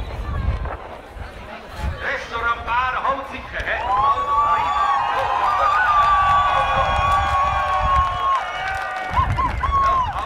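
A trumpet plays a few short notes, then holds one long, steady high note for about four seconds, with a couple more short notes near the end. Crowd noise and cheering run underneath.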